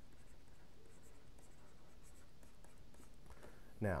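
Faint scratching and light taps of a stylus on a drawing tablet as a word is handwritten, in short irregular strokes.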